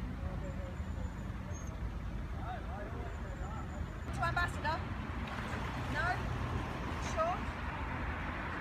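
A puppy whimpering and whining in short rising-and-falling cries, with a quick cluster about four seconds in and single whines near six and seven seconds. Under them runs a steady low rumble from the manoeuvring narrowboat's engine.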